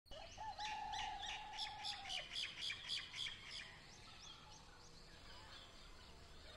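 Birds chirping: a fast run of repeated high chirps over a steady whistled note for the first few seconds, then fainter, scattered chirps.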